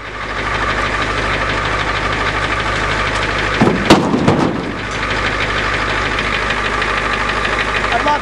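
A motor vehicle's engine running steadily at an even speed. About four seconds in there is a sharp knock with a short burst of louder noise.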